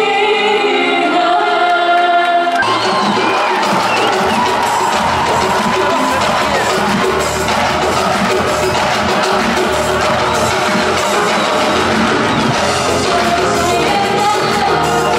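Live Arabic music: a woman's held sung notes, then about two and a half seconds in the band comes in fuller, with hand percussion (goblet drum and frame drum) driving a denser instrumental passage. Crowd noise and cheering sit underneath.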